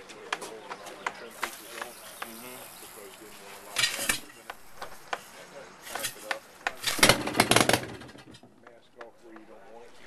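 Old two-cylinder marine engine, fuelled through a gas-soaked rag instead of a carburettor, being cranked and firing in loud irregular pops: a short burst about four seconds in and a louder cluster of several pops about seven seconds in, as it catches briefly without running on.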